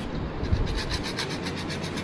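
A saw cutting through the skull bone, making a fast rasping rhythm of about a dozen strokes a second.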